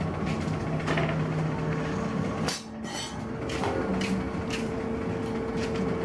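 Irregular metal knocks and clinks from metalworking in a workshop, over a steady machine hum.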